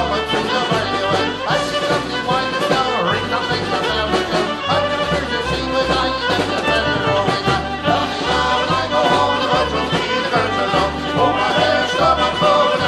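Live folk band playing an instrumental tune: fiddle and piano accordion carry the melody over drums and a bass line that alternates notes about twice a second.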